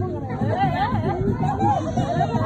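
Several people's voices chattering and calling out over one another, some high-pitched and lively.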